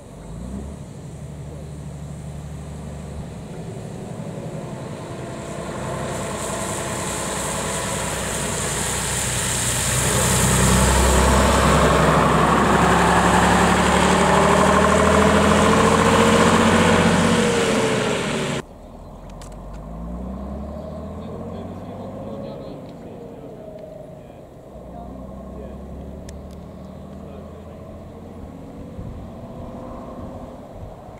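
Leyland National Mk2 single-deck bus's diesel engine running as the bus drives, mixed with passing car traffic. The sound builds to its loudest around the middle with changing engine pitch, then cuts off suddenly about two-thirds of the way through. After that the engine is heard again more quietly, with a rising note, as the bus drives by.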